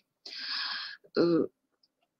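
A woman clearing her throat into a close microphone: a breathy rasp lasting about three quarters of a second, followed by a short voiced sound.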